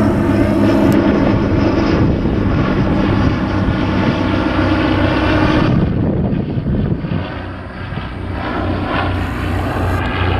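A de Havilland DH.89 Dragon Rapide biplane's twin six-cylinder inverted inline piston engines and propellers droning steadily as it flies overhead. The drone dips about six seconds in, then swells again near the end.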